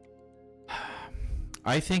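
A man takes a quick, audible breath into a close microphone a little under a second in, then starts to speak. Faint, steady background music plays underneath.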